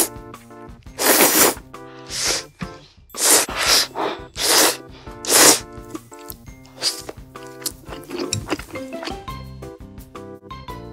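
Background music with loud, short slurps of ramen noodles eaten close to the microphone, about six in the first five seconds and a few softer ones after.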